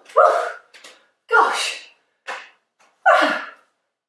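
A woman's short wordless vocal exclamations, like surprised gasps. There are three main ones about a second apart, with fainter ones between, and each drops in pitch.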